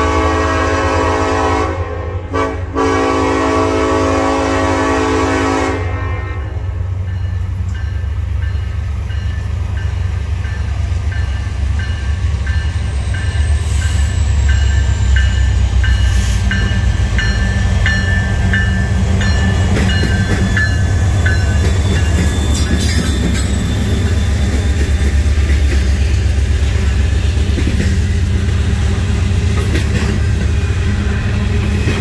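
Norfolk Southern EMD SD70ACe diesel locomotive's air horn sounding a chord in blasts, a short one and then a longer one that ends about six seconds in. Then the locomotive's diesel engine rumbles past, louder as it draws level, followed by the steady rolling of the intermodal container cars on the rails with faint intermittent wheel squeal.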